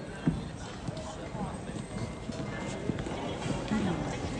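Voices in a large reverberant hall, with a few sharp, irregular knocks or clacks among them.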